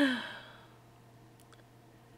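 A woman's sigh, voiced and breathy, falling in pitch and fading out within about half a second.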